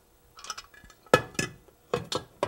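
A metal pressure canner lid set down on a gas stove's grate: a few light metal clinks and knocks, the loudest a little over a second in.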